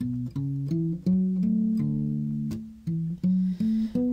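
Recorded soul-pop music: an instrumental bass and guitar riff of short plucked notes between sung lines, with no voice.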